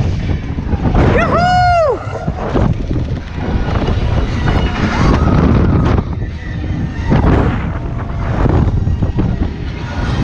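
Rushing wind buffeting an action camera's microphone as it spins and swings on a fairground ride, a loud, gusty rumble. About a second in, a short high cry rises and falls in pitch.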